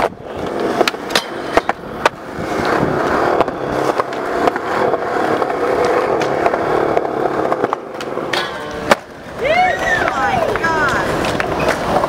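Skateboard wheels rolling on smooth skatepark concrete in a steady rumble, with a few clacks of the board in the first two seconds and a sharp board clack about three-quarters of the way in.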